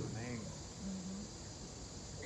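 A pause in speech: low room tone with a couple of faint, brief voice sounds, one just after the start and a short low hum about a second in.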